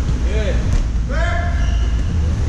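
A voice calling out twice without words, a short call and then a longer held one about a second in, over a steady low rumble of wind and handling noise on a moving camera's microphone, with one sharp click in between.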